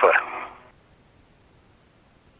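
The thin, band-limited voice of a spacewalk radio transmission trails off about half a second in. After that there is near quiet with only a faint hiss on the line.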